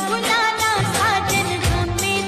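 A Bhojpuri pop song playing: a voice singing a gliding melody over a steady beat.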